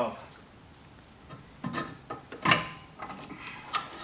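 A few sharp metal clanks and knocks as a Subaru WRX's front hub and steering knuckle are worked onto a new front axle. The loudest clank, about halfway through, rings briefly.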